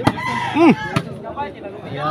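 A rooster crows briefly, its call arching and falling away at the end, over crowd chatter. Two sharp slaps of the ball being struck come at the start and again about a second in.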